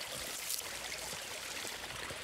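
A small creek running steadily, a soft even rush of water.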